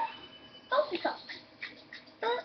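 A few short vocal sounds with gliding pitch, beginning about two-thirds of a second in after a brief quieter stretch.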